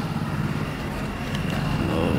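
A vehicle engine idling steadily with a low even hum, under a faint steady high-pitched whine.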